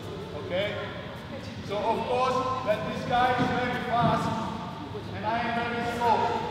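Several people talking in a large sports hall, voices echoing off the walls.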